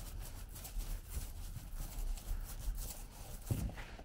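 Paint roller loaded with liquid waterproofing membrane being worked back and forth over a shower floor, a repeated scratchy rubbing of the nap on the rough surface. A dull thump near the end.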